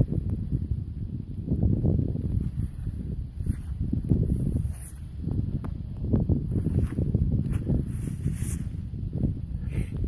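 Uneven low rustling and rumbling close to the microphone as a gloved hand breaks up clods of damp ploughed soil and handles a freshly dug copper coin.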